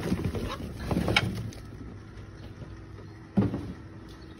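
Torn paper egg-carton pieces being dumped into a fabric worm bag, rustling and tumbling for about the first second and a half, then quieter. A single thump comes near the end.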